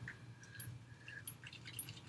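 Faint scattered small clicks and rubbing as a finger brush works along a dog's bottom teeth.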